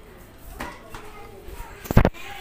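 A single sharp knock near the end, over faint voices in the background.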